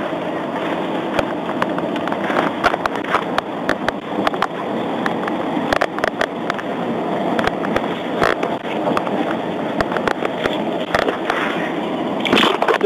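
Handling noise on an officer's body-worn microphone: a steady rushing noise with frequent irregular crackles and clicks, like the mic rubbing against clothing.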